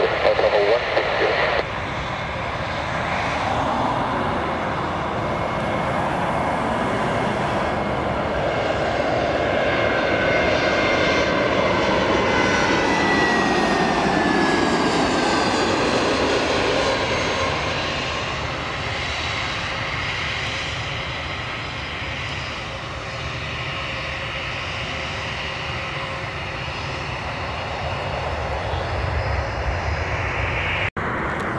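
Twin jet engines of an Airbus A320-family airliner on low final approach. The steady engine noise swells to its loudest around the middle as the plane passes close, with a whine that slides down in pitch, then eases off.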